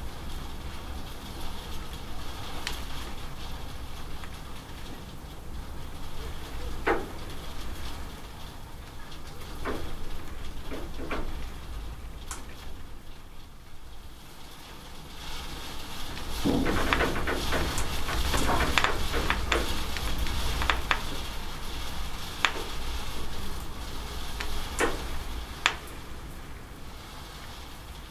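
Rain falling and dripping off a roof edge: a steady hiss over a low rumble, with scattered sharp drips and splashes that come thicker for a few seconds about two-thirds of the way through.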